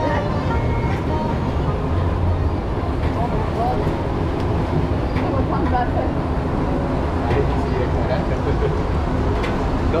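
Steady low rumble and rushing noise of a river-rapids ride, the round raft moving through a covered section, with indistinct voices mixed in.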